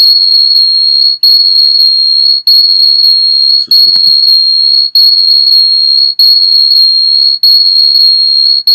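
Audio feedback whistle from a microphone and speaker caught in an echo loop: one steady high-pitched tone that drops out for a split second about every 1.2 seconds and comes straight back.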